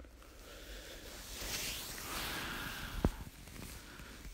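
Soft rustling handling noise that swells and fades as the phone is moved about, with one sharp tap about three seconds in.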